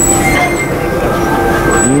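A passing train with its wheels squealing: several steady high-pitched tones held over the rumble of the train.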